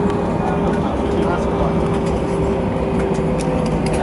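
Airliner cabin noise during taxi after landing: the jet engines running steadily at taxi power under a continuous cabin roar with a steady hum.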